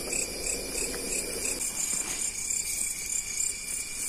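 Night-field crickets chirping in a steady high pulse, about four chirps a second, over a continuous insect trill. A low rustle of movement through grass fades out about a second and a half in.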